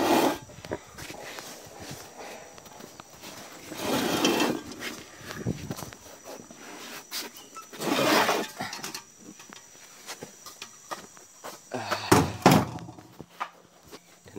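Handling noise from clutch parts being worked loose and set down: short bursts of scraping and clatter about every four seconds, with a few sharp metal knocks near the end.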